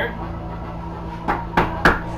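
Glass rods knocking and clicking against each other as one more clear glass rod is jammed into a bundle of coloured rods: three sharp knocks in the second half, over a steady low hum.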